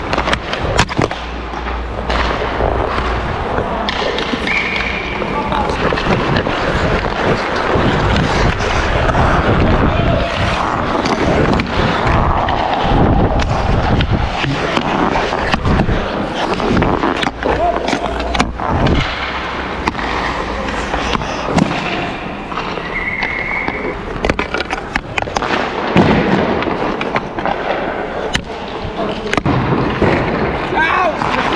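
Ice hockey practice on the rink: skate blades scraping and carving the ice, with sharp clacks of sticks and pucks at scattered moments and players' voices.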